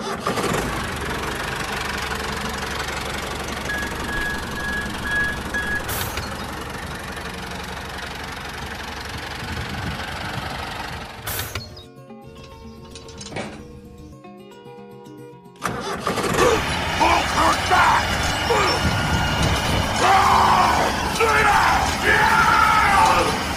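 A dubbed tractor engine sound runs steadily for about eleven seconds and cuts off suddenly. Quieter music follows, and from about sixteen seconds a louder stretch with voices over it takes over.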